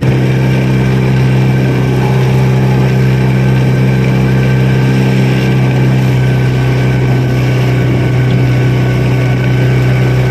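Fishing boat's outboard motor running steadily and loud, a constant even drone with no change in speed.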